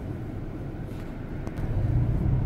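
Steady low rumble of a van's engine and road noise, heard from inside the cabin while driving.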